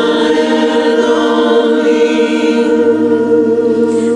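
Karaoke music: several voices singing together over a backing track, holding one long chord, with a low note joining about three seconds in.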